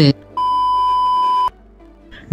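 A steady, high-pitched electronic beep tone, about a second long, starting a moment into the pause and cutting off suddenly.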